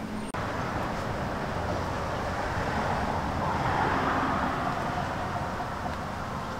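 Steady outdoor background rush, like distant road traffic, that cuts in shortly after the start, swells about four seconds in and eases off again.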